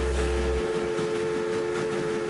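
A steady, held two-note tone, with a deep bass drone underneath that cuts off about half a second in.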